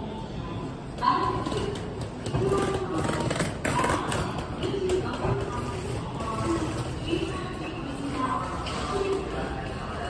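Indistinct voices echoing along a station platform, with a sharp thump about a second in.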